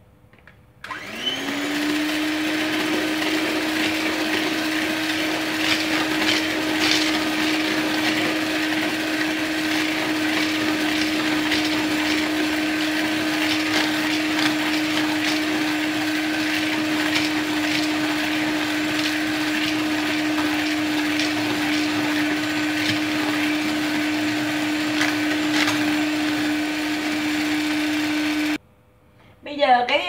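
Electric hand mixer whipping eggs on its low speed as sugar is poured in gradually: the motor starts about a second in, settles into a steady hum, and cuts off near the end. Light clicks from the wire beaters run over the hum.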